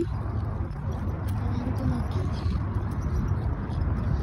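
Steady low rumble of wind buffeting a phone microphone while riding a bike along a paved street.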